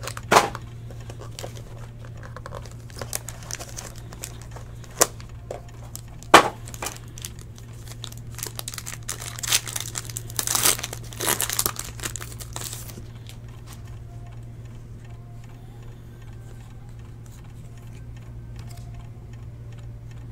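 Foil trading-card pack wrapper crinkling and tearing as it is ripped open, in sharp irregular bursts through the first two-thirds, then quieter handling of the cards. A steady low hum runs underneath.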